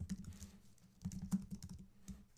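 Typing on a computer keyboard: quick runs of keystroke clicks, a short run at the start and a denser one from about a second in.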